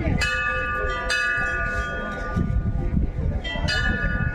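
Temple bells struck three times, just after the start, about a second in and near the end, each strike ringing on and overlapping the next, over a low rumble.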